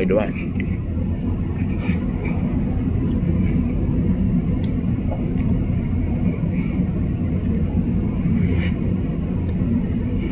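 Steady low rumble of a car idling, heard from inside its cabin.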